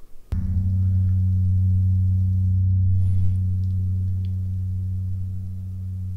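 A single deep struck tone, gong-like, with a sharp attack about a third of a second in. It rings on as a steady low hum that fades slowly over several seconds and is cut off near the end. It is an added sound effect marking the change to the next title card.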